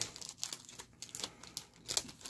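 Crinkling and crackling of card packaging as trading cards are handled: a scatter of light crackles, the sharpest one near the end.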